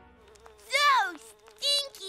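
Cartoon kitten giving two whimpering mews that fall in pitch, the first longer than the second, over a thin wavering buzz.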